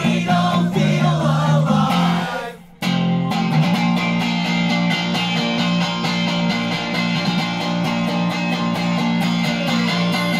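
Electric guitar played through a small combo amp with a singing voice over it. About two and a half seconds in, the music cuts out for a moment, then the guitar comes back alone with steady, evenly repeated strumming.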